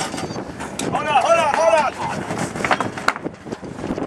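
A man's voice calls out in one drawn-out shout over background crowd noise. Scattered sharp metallic clinks come from hand tools working on a tractor.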